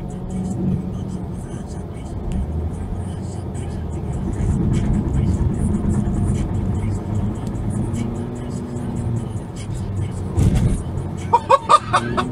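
A car driving, heard from inside the cabin on a dashcam: steady engine and road rumble with people talking, and a burst of laughter near the end.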